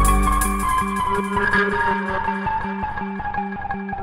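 Tekno acid electronic music in a breakdown: the kick and bass drop out in the first half-second, leaving a fast chopped synth pattern over a slowly falling higher tone.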